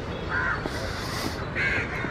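A crow cawing: two harsh calls about a second apart, with a brief hiss between them over a steady low rumble.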